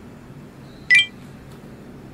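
A single sharp metallic clink about a second in, with a brief ring.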